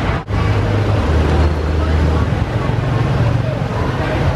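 Busy street traffic with a steady low engine hum and people talking. The sound drops out briefly about a quarter second in.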